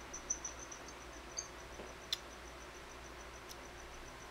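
A cricket chirping, a faint, steady, high-pitched train of fast even pulses. A few soft clicks sound over it, the sharpest about two seconds in.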